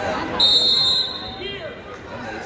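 A short, high, steady signal tone of about half a second marks the end of a high-school wrestling match. It is heard over crowd voices in a gym.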